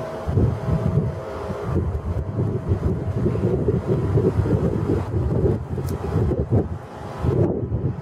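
Wind buffeting the microphone: an uneven, gusting rumble.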